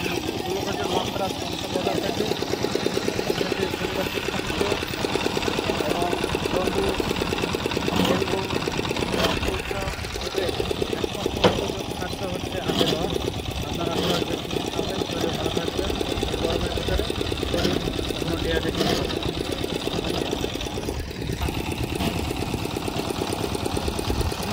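Small stationary engine of a sugarcane juice machine running steadily with a rapid, even knocking beat, with voices talking over it.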